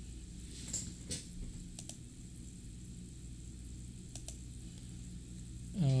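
A handful of short, sharp clicks from a computer being worked to refresh a web page, some coming in quick pairs, over a steady low hum.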